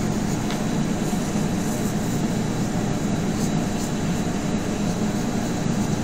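Steady room noise: an even low hum with hiss, like an air conditioner running.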